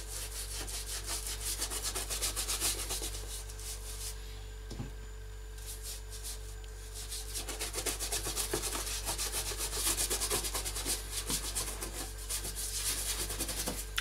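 Bristle shoe brush scrubbing over a leather boot in quick back-and-forth strokes, working leather grease into the old leather. The strokes pause for about a second and a half about four seconds in, then resume more strongly.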